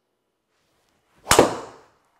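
A golf driver striking a ball: one sharp crack just over a second in, fading quickly over about half a second.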